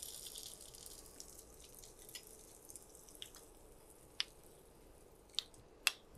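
Egg-battered pointed gourd frying in a little oil: a faint sizzle that fades over the first couple of seconds. A few sharp clicks follow later, the loudest near the end.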